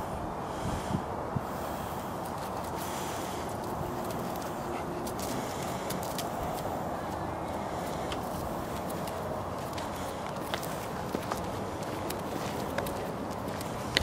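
Steady outdoor background noise with faint, irregular footsteps on pavement.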